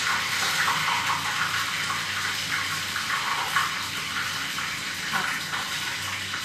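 Batter fritters frying in a pan of hot oil, a steady sizzle.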